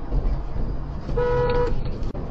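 A vehicle horn gives one short toot of about half a second, a little over a second in, over the steady low rumble of a car driving.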